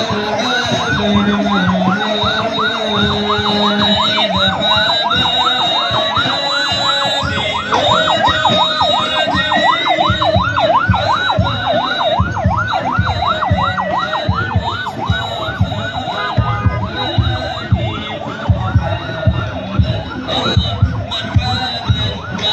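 Electronic siren yelping in fast up-and-down sweeps, several a second, loudest in the middle and fading in the last few seconds. Low rhythmic thumping comes in under it from a little past halfway.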